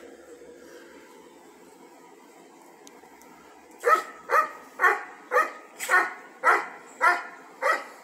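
A dog barking repeatedly, about eight barks in quick succession, starting about halfway through after a quiet stretch.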